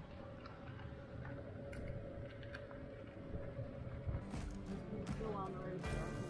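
Ride in an electric golf cart: a steady motor whine over the low rumble of the wheels on the path. Near the end, music comes in over it, with a few sharp clicks.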